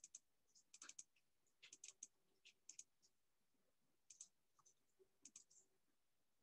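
Near silence broken by faint, irregular clicks in small clusters, typical of a computer keyboard and mouse being used.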